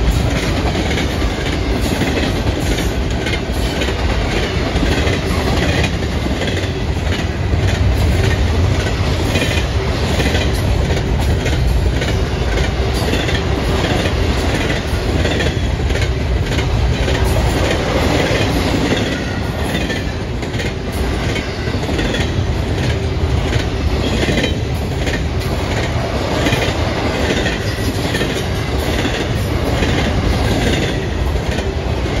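Double-stack intermodal container train of well cars rolling past close by, loud and steady: a continuous rumble of the cars with rapid, repeated clicking and clatter of the wheels on the rails.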